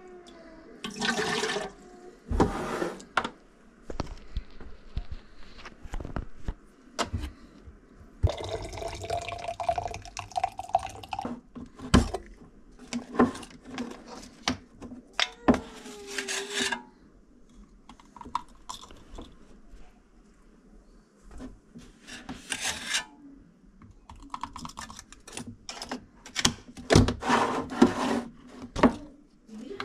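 Baby bottle and metal formula cans being handled on a wooden shelf: repeated knocks, clicks and scrapes of plastic and metal. About a third of the way in comes a stretch of water pouring into a bottle, its pitch rising slightly as it fills.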